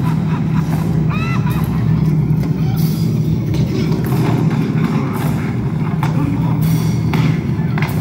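Movie soundtrack played back in a room: music over a steady low rumble.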